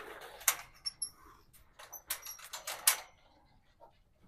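Young pigs eating corn from a feed pan: irregular sharp crunches and clicks, busiest about two to three seconds in, with a couple of faint high squeaks.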